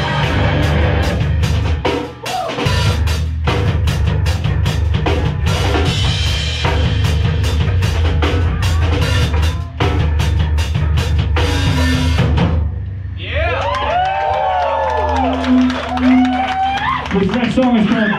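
Hardcore punk band playing live: distorted guitar, bass and a pounding drum kit at full volume, stopping abruptly about 12 seconds in. After the stop, sliding high tones and a held low note ring on as the song ends.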